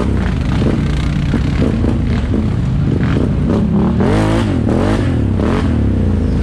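ATV engines running while riding a rough dirt trail, the revs rising and falling a few times about four to five and a half seconds in, with scattered clatter from the bumps.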